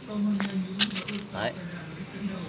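Two sharp clicks, a little under half a second apart, over a low steady hum. A short spoken syllable comes near the end.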